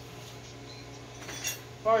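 Light metallic clinking of small metal parts being handled, a short cluster about a second and a half in.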